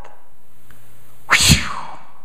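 A single sneeze about a second and a half into the pause, short and sharp, over a faint steady low hum.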